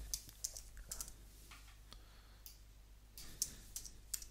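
Faint computer keyboard keystrokes as short words are typed, scattered taps with a quick run of them near the end.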